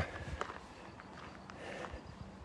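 Faint footsteps of a person walking on dry dirt ground, a few soft, uneven steps.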